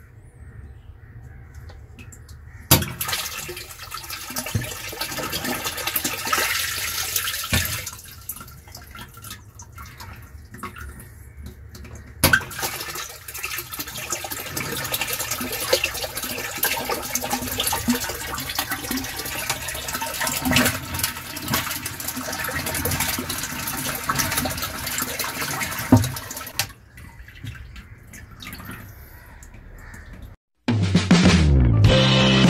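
Water gushing into a plastic storage tank from its inlet, switched on and off by a float-switch-controlled solenoid valve. The flow starts suddenly a few seconds in, stops about five seconds later, starts again with a click near the middle, and cuts off a few seconds before the end, as the float is lowered and raised.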